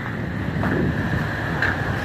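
Steady rushing wind on the microphone over the low rumble of idling diesel semi trucks.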